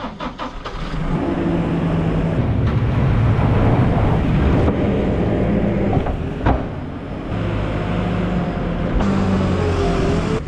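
A farm loader's diesel engine running and changing pitch as it works, while loads of straw-laden cattle dung are tipped into a metal farm trailer, with a sharp thud about six and a half seconds in as a load lands.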